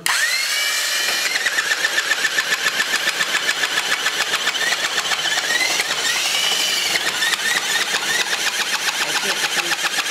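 Duplex N10K electric nibbler switched on, its motor whining up to speed in the first second, then its punch chattering in fast, even strokes as it nibbles through 1/8-inch (3.2 mm) mild-steel channel, which is about the tool's maximum capacity.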